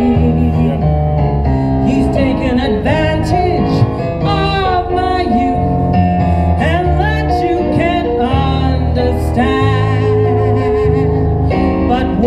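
Live blues music played through a stage PA: keyboard and guitar with a singer, over a walking bass line.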